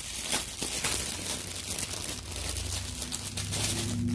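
Clear plastic bag of diamond-painting drill packets crinkling and rustling as it is handled and pulled open. A motorcycle engine outside comes in underneath, low and steady, growing near the end.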